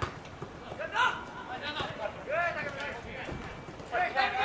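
Voices of players and onlookers calling out across an open soccer pitch in short separate shouts, with a brief sharp knock about a second in.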